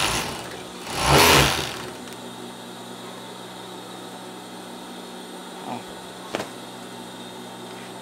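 Siruba industrial overlock machine stitching a short shoulder seam in one burst of about a second, over the steady hum of its running motor.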